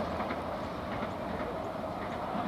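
Suburban electric train running along the track away from the listener, a steady, even rolling noise.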